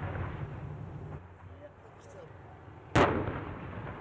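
Self-propelled howitzers firing: the rumble of a previous shot dies away at the start, then one sharp report about three seconds in rolls off over about a second.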